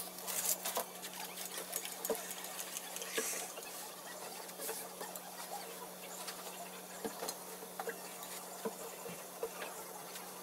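Sticky lint-roller sheets crackling and tearing, then fabric rustling as trousers are picked up and handled, with scattered small clicks. A steady low hum runs underneath.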